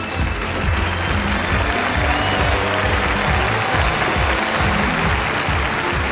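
Audience applause over band music with a steady low bass line, as presenters are brought on stage.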